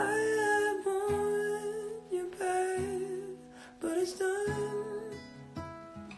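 Acoustic guitar with a capo strumming chords, the chords changing about every second or so, while a man sings a melody in long held notes over it.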